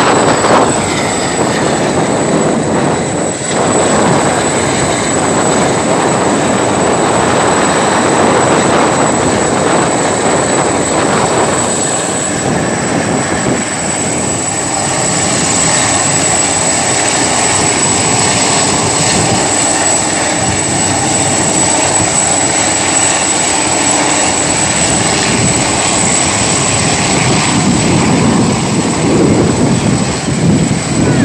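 French Navy helicopter hovering overhead: loud, steady rotor and engine noise.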